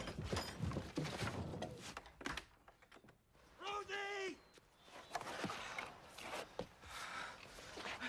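Knocks, rattles and thumps at a wooden cabin door, with one short wordless shout about four seconds in, then more scattered knocks.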